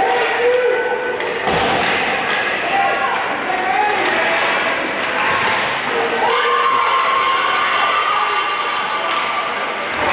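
Voices calling out over an ice hockey game in an echoing indoor rink, with a sharp knock of stick or puck about one and a half seconds in and one long held call from about six seconds.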